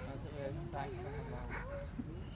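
Baby macaque whimpering in a long, wavering cry, with a bird chirping faintly and repeatedly in the background.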